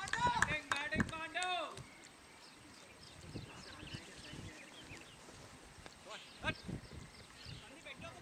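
People's voices on a cricket field, loud and close for the first two seconds, then faint chatter in the background.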